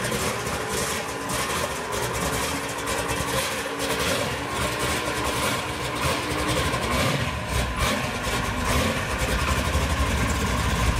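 Car engine idling steadily with a low rumble, with a few faint steady tones over the first six seconds.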